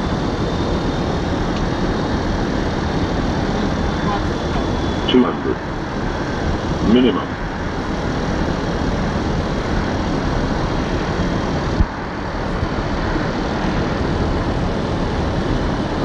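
Steady rushing jet engine noise of an airliner, with two short bursts of radio voice about five and seven seconds in.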